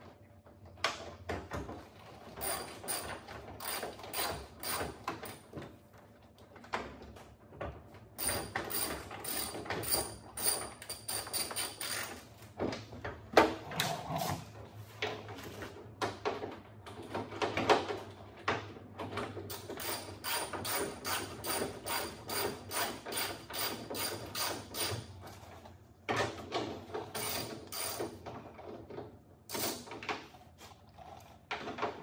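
Hand ratchet clicking in runs of quick strokes, about three clicks a second, with short pauses between runs, as fasteners on the tailgate are turned.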